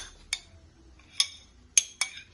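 A few sharp clinks of kitchenware against a glass baking dish, spaced irregularly.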